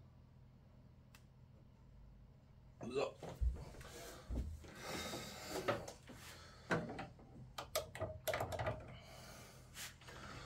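Faint room tone for about three seconds, then a run of small clicks, taps and rustles from hands working at the model railway track, with a few short breathy vocal sounds mixed in.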